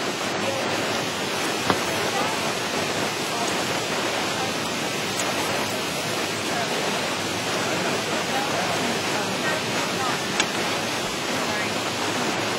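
Steady rushing hiss with a couple of faint clicks.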